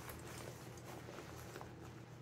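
Quiet pause: a low steady background hum with a few faint clicks and rustles of a fishing vest being handled.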